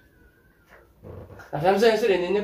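A brief pause in a person's speech, holding a faint thin steady whine. The voice resumes speaking about a second and a half in.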